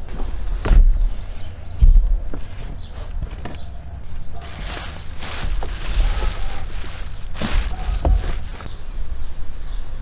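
Handling noise: two thumps in the first two seconds, then a few seconds of crinkling plastic wrap around a boxed battery.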